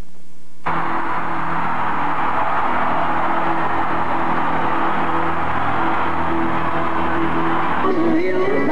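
Live rock concert sound in an arena: a large crowd cheering over a sustained chord from the band. It starts suddenly about a second in.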